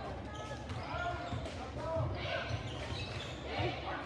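Live basketball game sounds echoing in a gym: the ball dribbling, sneakers squeaking on the hardwood court, and spectators' voices.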